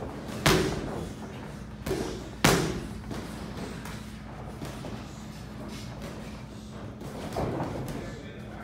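Padded boxing gloves landing punches in sparring: a few sharp thuds, the two loudest near the start and about two and a half seconds in, with softer hits later, over a steady low hum.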